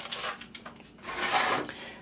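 Parchment paper rustling and a plastic slab rubbing against it as a melted HDPE block is lifted out of a lined baking pan, loudest about a second in.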